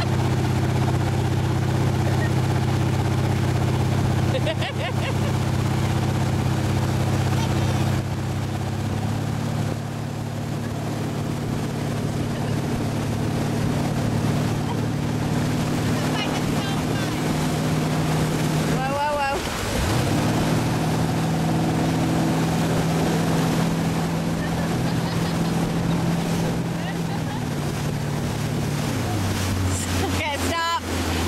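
Motorboat engine running steadily while towing, with the rush and splash of its wake; the engine's pitch shifts a few times.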